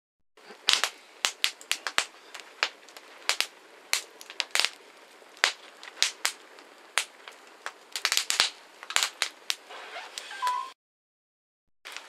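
Crumpled paper burning in a small metal fire box, crackling with irregular sharp snaps, at times several a second. The sound starts a moment in and cuts off suddenly near the end.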